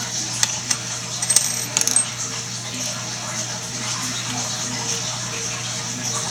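Small brass plumbing fittings clinking lightly against each other and the countertop as they are handled, with a few quick clicks in the first two seconds. A steady low hum runs underneath.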